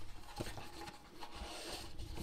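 Faint cardboard rubbing and scraping as the inner compartment of a smartphone box is worked free by hand, with a light knock about half a second in.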